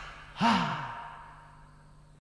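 The last chord of a Latin dance-band record dies away, then a voice gives one sigh about half a second in, falling in pitch and fading.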